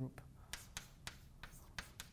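Chalk writing on a blackboard: a faint run of short taps and strokes, about eight in two seconds.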